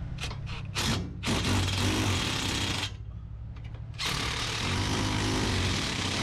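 DeWalt 20V cordless impact driver hammering bolts tight on a water-jet pump housing through a socket extension. A few short blips, then a rattling run of about a second and a half, a pause, then another run of about two seconds.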